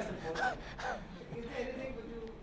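Laughter: a few short breathy bursts of a laugh in the first second, trailing off after.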